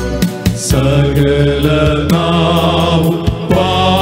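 Male vocal group of six singing a Christian worship song together, amplified through microphones, over instrumental backing with a steady beat.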